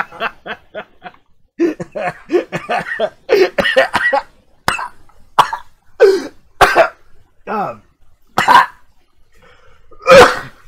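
A person laughing helplessly in quick bursts, then breaking into separate coughing, gasping fits spaced about half a second to a second apart.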